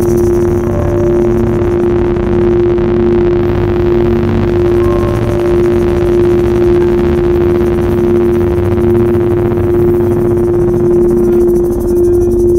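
Ambient sound-healing music of singing bowls and gongs: one steady held tone over a pulsing lower tone and a dense low rumble.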